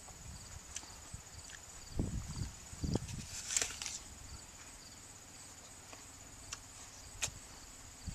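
A bite into a crunchy Zestar! apple about three and a half seconds in, after low chewing and handling sounds. Insects chirr steadily underneath.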